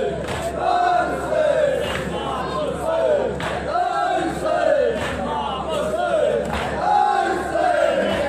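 A crowd of men chanting a nauha, a Shia mourning lament, in loud overlapping voices led over a PA, with sharp slaps of matam (chest-beating) about every second and a half.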